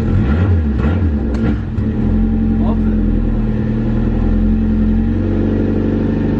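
Honda Civic EG's carbureted D15 four-cylinder engine catching and running unevenly for about two seconds, then settling into a steady idle, its revs rising slightly near the end. It is running on fuel poured straight into the carburetor, with the tank empty.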